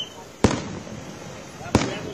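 Two fireworks bang about a second and a quarter apart, each a sharp crack with a ringing echo after it, over a background of voices.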